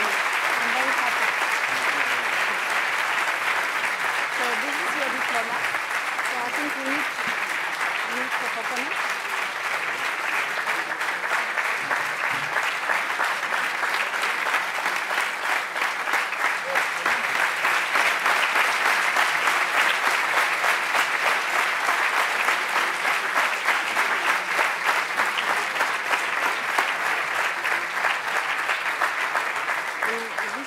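Sustained audience applause, a dense steady clapping that grows a little louder past the middle, with faint voices underneath.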